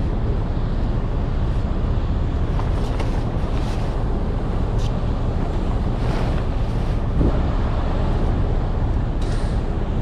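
Steady low outdoor rumble with wind on the microphone, over which a heavy flatbed tarp is dragged and folded on the trailer deck: a few soft rustles and a dull thump about seven seconds in as the tarp is dropped.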